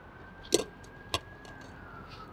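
Distant siren: one faint long wail that slowly rises, then falls away, over low street noise. Two sharp clicks about half a second apart are the loudest sounds.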